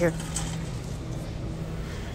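Steady grocery-store background noise: a faint low hum under an even rumble, with no distinct events.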